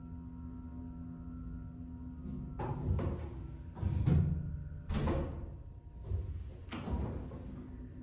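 Dover hydraulic elevator doors sliding shut after a floor call, with a run of thuds and rumbles a few seconds in, over a steady electrical hum. A single sharp click follows near the end as the car gets under way.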